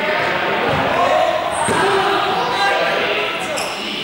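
Players' voices echoing in a large sports hall, with a small ball thudding twice, about a second apart.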